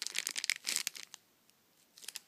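A clear plastic zip bag crinkling and crackling as it is handled and a squishy is pulled out of it. The crinkling stops about a second in.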